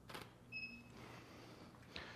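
Faint click of a camera shutter taking a frame. About half a second later a short, high electronic beep follows, from the Profoto studio strobe signalling that it has recycled after firing.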